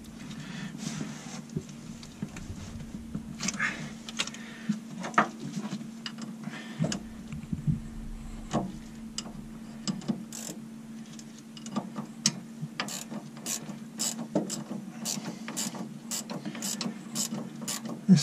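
Spanner tightening the stern gland's adjusting nuts on a narrowboat's propeller shaft: a string of irregular metallic clicks and ticks, over a steady low hum. The gland is being done up evenly to compress the newly fitted packing rope around the shaft.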